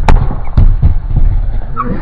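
Skateboard on a mini ramp: a sharp clack of the board just after the start, wheels rumbling on the ramp, then several thuds as the skater falls onto the ramp surface.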